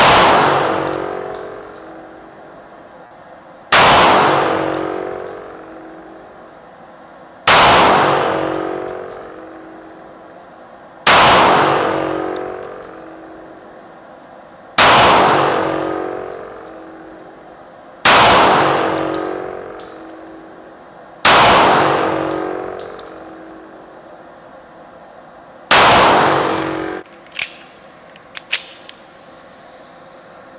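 Colt Combat Commander 1911 pistol fired slowly and deliberately in an indoor range: eight single shots, about one every three and a half seconds. Each shot rings and echoes for a couple of seconds before dying away. After the last shot the sound cuts off suddenly, and a few small clicks follow.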